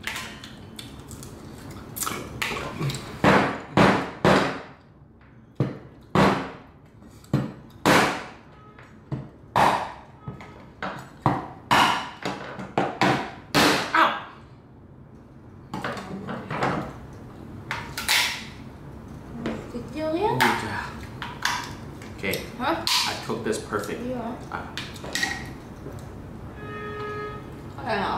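Cleaver chopping through cooked lobster shell on a wooden cutting board: about a dozen sharp strikes in the first half, each with a brief ring, then softer cracking and handling sounds.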